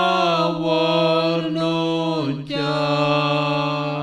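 Slow sung chant: long held notes over a steady low note, with a move to a lower note a little past two seconds in.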